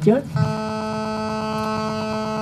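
A steady electrical buzz at one fixed pitch with many overtones, starting about a third of a second in and holding unchanged: interference picked up by the microphone and sound system.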